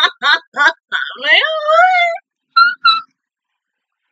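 A woman laughing excitedly in a few quick bursts, then letting out a long, high, wavering squeal and two short squeaks, which stop about three seconds in.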